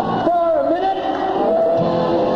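Live band music with a man's voice singing over guitar and band accompaniment.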